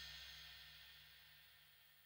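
The last ringing note and cymbal shimmer of a rock music track fading out into near silence.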